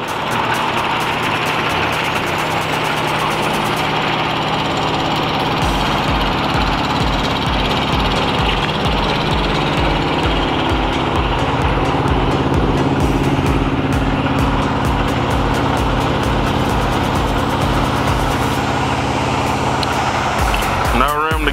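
Semi tractor's diesel engine idling close by, a steady running sound. From about five seconds in, a regular low throb runs under it.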